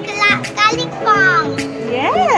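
A young girl's high-pitched, excited voice giving three short, falling cries over background music.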